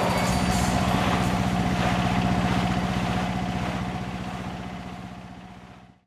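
An engine idling with a steady, rapidly pulsing low hum, fading out to silence by the end.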